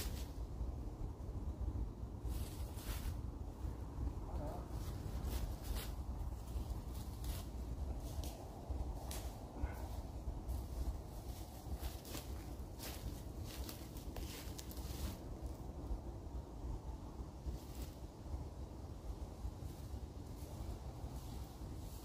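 Wind rumbling on the microphone, with irregular crackles and rustles of dry fallen leaves and handling noise as a hammock tarp is rigged.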